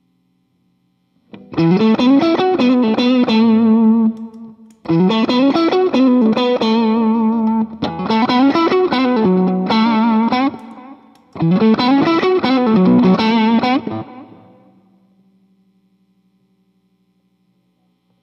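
Electric guitar, a Stratocaster with CS69 pickups, played through a Fulltone Fulldrive 1 overdrive pedal into a '74 Fender Deluxe Reverb: a short overdriven phrase with string bends, played four times, the last one ringing out. A faint steady amp hum fills the gaps.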